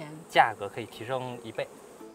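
Honeybees buzzing around the hives, mixed with a man talking.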